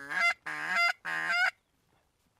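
Three loud goose honks in quick succession, each ending with a sharp upward break in pitch, stopping about one and a half seconds in.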